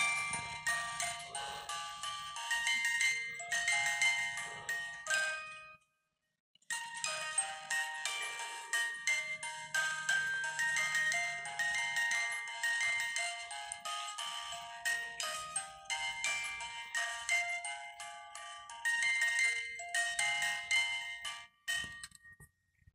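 Pirate-ship figurine music box playing its tune: a quick stream of bright, plucked, tinkling notes with a faint low hum underneath. The tune breaks off for about a second a quarter of the way in, resumes, and stops just before the end.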